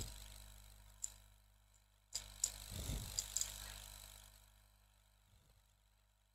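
Faint handling noise: a single click about a second in, then a short cluster of clicks with a soft rustle lasting a second or two, then quiet.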